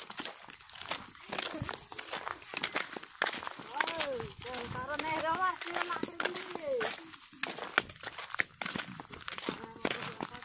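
Footsteps on a gravelly dirt path, with a high voice calling out for a few seconds in the middle.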